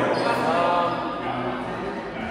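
Indoor volleyball play in a gymnasium: players' voices echo around the hall as the ball is being played, with a brief high squeak just after the start.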